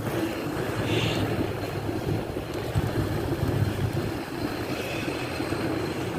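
Inline skate wheels rolling over wet asphalt and concrete: a steady rumbling hiss.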